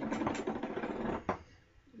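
Badger shaving brush being worked on a puck of shaving soap: a quick, scratchy swishing for about a second, ending with a small knock.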